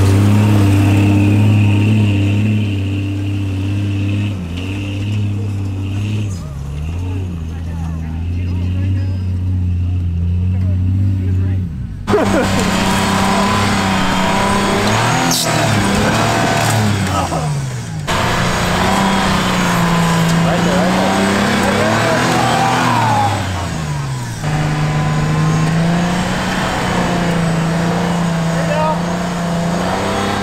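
Pickup truck engines, a first-generation Toyota Tacoma's among them, labouring up a sandy off-road climb in low gear, the revs rising and falling with the throttle. The sound changes abruptly about twelve, eighteen and twenty-four seconds in where separate clips are cut together.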